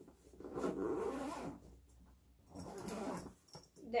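Zipper on a soft duffel bag being pulled shut in two long pulls, each lasting about a second, ending in a short click.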